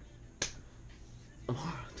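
A single sharp click about half a second in, followed by a short murmur of a man's voice near the end.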